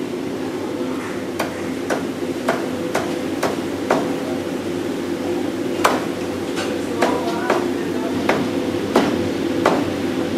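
A cleaver chopping a frog on a wooden chopping block: about a dozen sharp strikes, roughly two a second, in two runs with a short pause between them. A steady hum runs behind.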